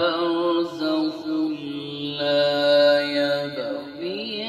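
A man's voice chanting a slow, melodic Islamic devotional recitation into a microphone, holding long wavering notes. Beneath it runs a steady low drone that fades out shortly before the end.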